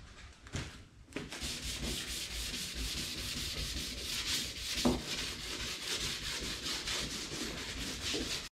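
Hand sanding of a cured forged-carbon and resin surface with a sanding pad: quick back-and-forth scratchy strokes in a steady run, starting about a second in.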